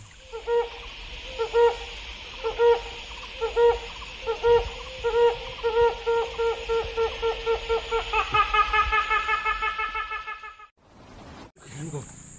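A series of hooting calls over a steady high hiss: one note about every second at first, quickening to a rapid run of notes before stopping abruptly about ten seconds in.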